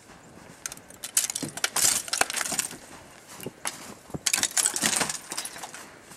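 Icicles snapping and breaking off a roof edge as they are grabbed and knocked down, a rapid clatter of sharp cracks in two bursts, the first about a second in, the second about four seconds in.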